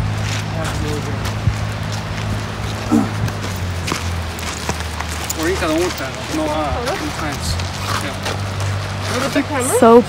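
People talking, words not clear, over a steady low drone that shifts in pitch a couple of times.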